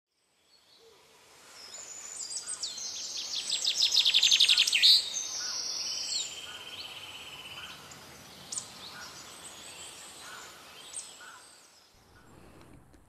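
Songbirds singing in woodland. One bird's fast trill of rapidly repeated high notes builds to its loudest about four to five seconds in, followed by a buzzy phrase and then fainter, scattered calls. The sound fades in at the start and fades out near the end.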